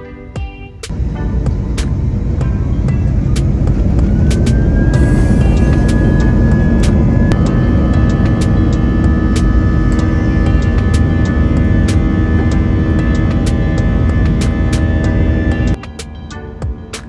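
Airbus A320 jet engines, heard from the cabin over the wing, spooling up to takeoff thrust about a second in: a rising whine over a swelling roar that then holds as a steady loud roar through the takeoff roll. It cuts off suddenly just before the end. Background music with a steady beat plays over it.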